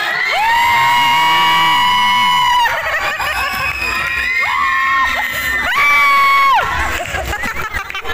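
Children shrieking over a cheering crowd: one long high-pitched scream of about two seconds near the start, then two shorter ones.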